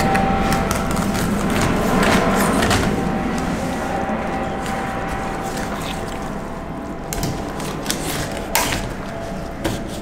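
Fillet knife cutting and scraping along a lingcod on a stainless steel table, with a few sharp knocks, over a steady background hiss.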